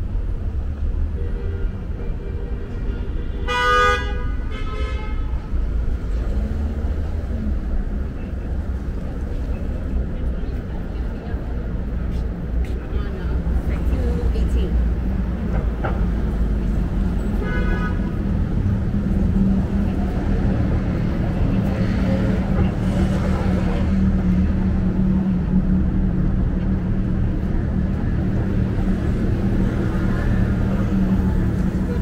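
City street traffic with car horns: a horn honks about four seconds in, followed by a shorter toot, and another honk comes near the middle. Under them, a steady traffic rumble runs on, with an engine hum joining in the second half.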